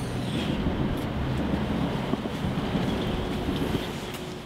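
Steady outdoor street noise: a low rumble with wind buffeting the camera microphone.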